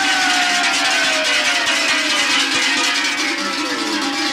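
Pair of large cowbells (talăngi) shaken hard, clanging continuously and loudly, with a long shout slowly falling in pitch over them. The low steady drone of a buhai friction drum, a barrel rubbed with a horsehair rope, sounds beneath.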